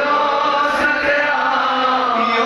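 A man chanting a devotional hymn, his voice held in long sustained notes.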